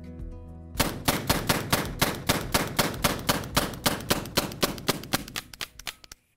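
Background music, then from about a second in a rapid, evenly spaced run of sharp cracks, about five a second, that fade away and cut off at the end.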